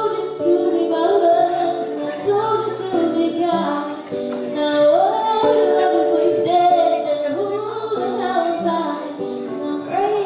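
A young girl's voice singing a slow melody into a microphone, with held notes that slide between pitches, over acoustic guitar accompaniment.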